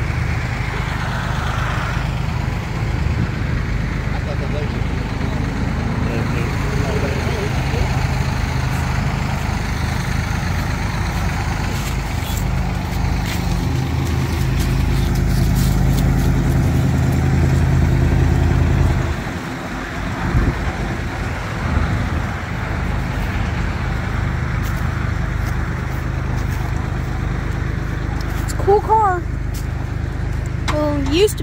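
Station wagon's engine running at low speed, pulling a loaded car trailer close by. It is a low, steady hum that grows louder, then drops off suddenly about 19 seconds in. A few short, high, bending sounds come near the end.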